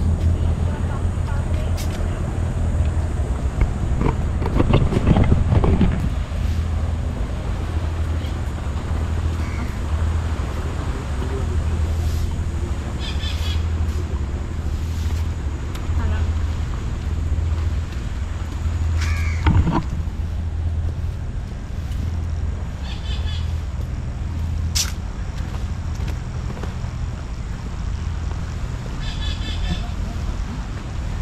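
Seaside outdoor ambience: a steady low rumble, brief murmured voices about four to six seconds in, and a bird calling a few times in short runs of quick repeated notes.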